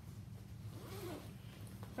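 Zipper on a fabric tote bag's pocket being pulled open: a short, faint rasp near the middle.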